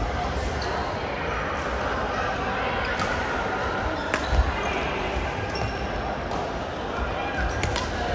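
Badminton rally: sharp cracks of racket strings hitting the shuttlecock, a few seconds apart, with thuds of footwork on the court floor. Behind them is the steady chatter and hitting of a busy multi-court badminton hall.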